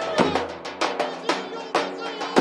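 Live traditional folk dance music: a large drum beats steadily about twice a second under a melody on pitched instruments.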